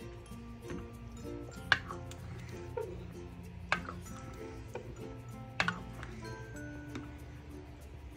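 Light background music, with three sharp knocks about two seconds apart from a plastic ladle striking the pot while stirring and scraping rice porridge.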